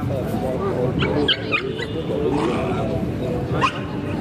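Voices of a crowd chattering, with dogs barking: a quick run of short, high-pitched barks about a second in.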